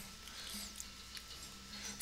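Faint steady hum and hiss, with one soft click about a second in: a computer mouse button being clicked.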